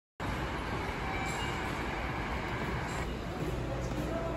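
Steady low rumble and hiss of a railway station concourse with a train running nearby, cutting in abruptly a fraction of a second in.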